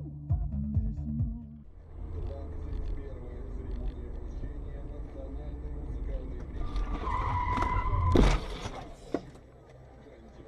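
A car's steady road and engine noise heard from inside the cabin, then a tyre squeal of about a second ending in a loud crash as the car collides with another, followed by a smaller knock. Electronic music with a beat plays for the first second and a half.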